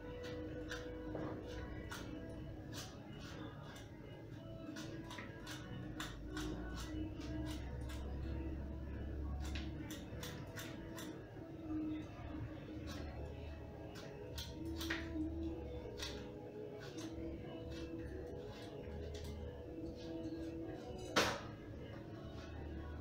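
Soft background music with held tones, over frequent small clicks and scrapes of a paring knife peeling an apple. About a second before the end the peeled apple is set down on a plastic cutting board with a louder knock.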